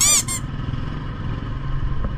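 A brief high-pitched squeak right at the start, then a motorcycle engine running low and steady while it creeps through slow traffic.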